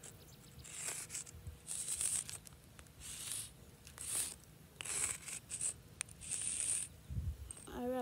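Stick of sidewalk chalk scraping across concrete in a series of about seven short, high-pitched strokes, roughly one a second, with a soft low thump near the end.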